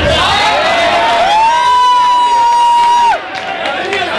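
Boxing crowd shouting and cheering. One voice holds a single long, high shout for about two seconds, starting a second in and breaking off near the end.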